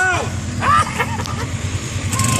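ATV engine running steadily, a low hum, with brief shouted voices over it.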